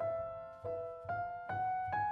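Kawai grand piano played solo: a chord or note struck about every half second, five in all, each ringing into the next, the upper line stepping upward.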